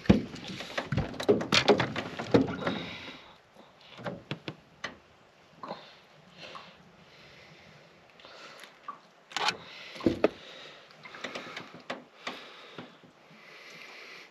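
A small brown trout flapping and knocking against the aluminium floor of a small boat: a quick flurry of slaps and knocks for the first few seconds, then scattered single knocks and rattles as it is handled.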